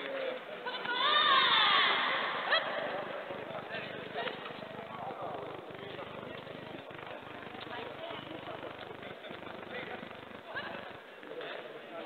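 A loud, high shout with falling pitch about a second in, typical of a karate fighter's kiai on an attack, then a sharp knock, followed by scattered quieter shouts and voices.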